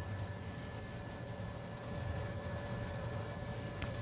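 Steady low background hiss and hum of a workshop, with a faint click near the end.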